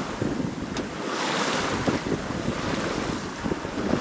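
Bow wave and wake rushing and splashing along the hull of a Nicholson 35 sailing yacht moving fast under sail, with wind buffeting the microphone. The rush of water swells about a second in.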